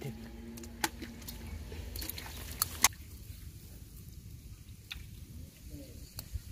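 A hand digging in wet mud and shallow water, with soft squelching and a few sharp clicks, most of them in the first three seconds.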